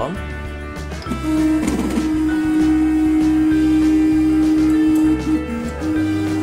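Guitar background music, and over it a steady motor tone from the CoreXY 3D printer's stepper motors as the axes move to their home position. The tone starts about a second in and holds for about four seconds, drops lower briefly near the end, then returns.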